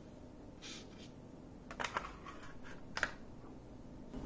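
Cylindrical lithium-ion cells being pushed into the plastic slots of a four-bay LiitoKala battery charger: a few sharp clicks, the loudest about two and three seconds in, with a short soft rustle just before the first second.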